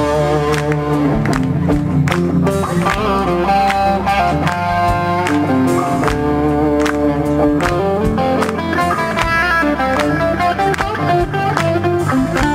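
Live rock band playing an instrumental break: an electric guitar carries the lead melody in long held notes over bass and steady drums.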